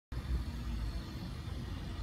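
Steady low rumble of road traffic in outdoor street ambience.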